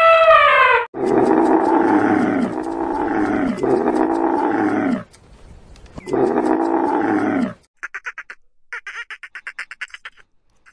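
A dromedary camel calling in long, loud, falling groans, two runs of them with a short pause between. It comes after the last moment of an elephant's trumpeting call, and near the end a quick series of short high-pitched calls follows.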